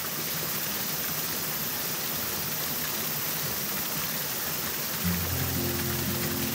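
Mountain stream water rushing over rocks in a small cascade, a steady even rush. Background music chords come in near the end.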